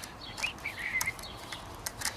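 A few small sharp clicks of a screwdriver working a metal drain plug on an outboard gearcase, with a bird chirping briefly between about half a second and a second in.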